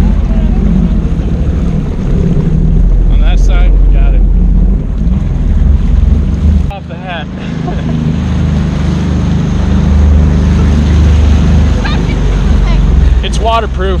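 Jet ski engine running steadily, with wind buffeting the microphone and water rushing past the hull. The level dips briefly about halfway through, and a few short voice fragments come through.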